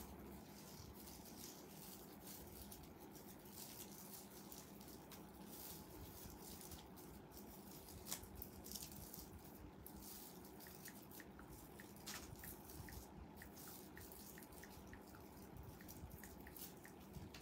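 Near silence: faint room tone with scattered light clicks, and a run of soft short ticks in the second half.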